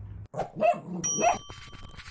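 A dog gives two short barking calls. About a second in, a bright bell-like chime starts and rings on.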